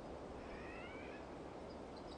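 A single faint, short rising animal call about half a second in, over quiet outdoor background noise.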